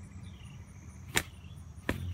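Two sharp strikes of a hand digging tool's blade chopping into grassy soil, one about a second in and one near the end, over faint, regular insect chirping.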